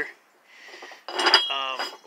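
A short pause with a faint hiss, then a man's voice starting about a second in.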